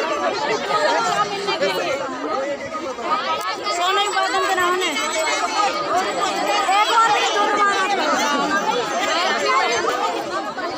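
Several people talking over one another in continuous chatter, at a steady level.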